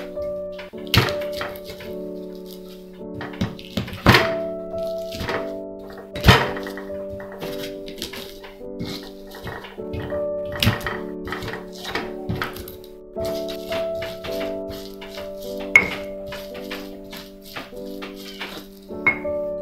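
Stone pestle (ulekan) pounding and grinding garlic cloves in a stone mortar (cobek): irregular sharp thuds of stone on stone, the hardest in the first several seconds, as the whole cloves are crushed to a paste. Background music with long held notes plays throughout.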